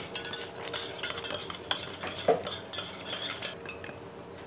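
Metal spoon stirring in a stainless steel tumbler, dissolving sugar in it, scraping and clinking against the sides, with one louder clink a little past two seconds in.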